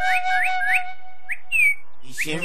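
Theme music: a high whistled line of quick upward-sliding notes, about four a second, over a held steady lower tone, ending with one longer falling note.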